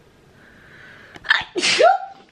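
A woman sneezing once, loudly, about one and a half seconds in, just after a quick sharp breath.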